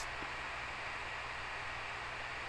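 Steady low hiss with a faint low hum underneath: the recording's background noise, or room tone.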